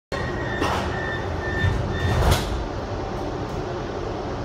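Rome Metro Line C train running through a tunnel, heard from inside the car: a steady rumble with a thin high tone switching on and off about every half second, and two brief rushing swells, about one and two seconds in.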